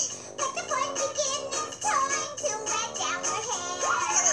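Music with a sung vocal line and a steady beat.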